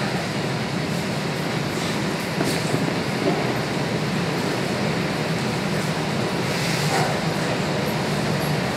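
Steady low rumbling room noise with a few faint knocks and no speech.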